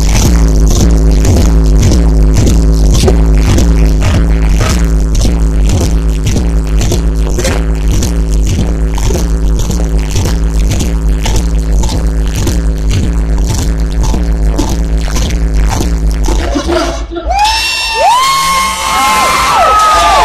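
Loud dance music with a heavy, steady bass beat played over an outdoor stage sound system. The music cuts out about seventeen seconds in, and the crowd cheers and whoops.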